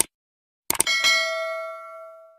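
Sound effects of an animated subscribe button: a short click, then another click about three-quarters of a second later followed by a notification-bell chime that rings out and fades over about a second and a half.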